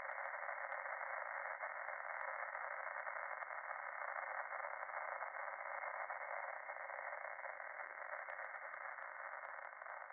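Steady, narrow-band radio static hiss with faint scattered crackles, slowly fading near the end.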